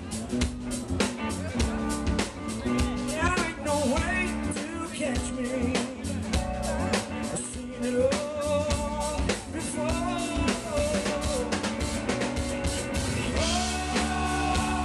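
Blues-rock band playing live: electric guitar, bass guitar and drum kit.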